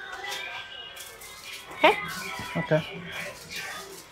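Background music playing over the hubbub of a busy shop, with voices talking over it.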